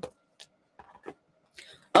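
Faint rustling and a few light clicks from paper packaging being handled as a wax warmer is unwrapped.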